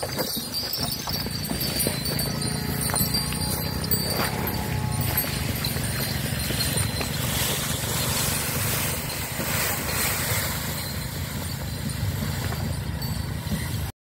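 Wooden bullock cart drawn by a pair of oxen rolling along a dirt track: a steady low rumble of the wheels with the animals' hoof steps.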